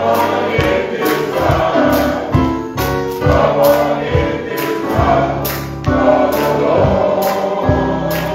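Gospel music: a men's choir singing, accompanied by keyboard and drums keeping a steady beat.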